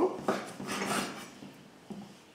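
Kitchen knife slicing through a sausage onto a wooden cutting board, a few cutting strokes in the first second, then a light knock near the end.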